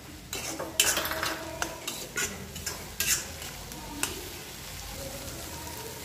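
Steel spatula scraping and knocking against an iron kadhai as a thick onion-tomato masala is stirred and fried (bhuna), under a steady sizzle. The scrapes come irregularly, mostly in the first four seconds, and then the sizzle carries on more evenly.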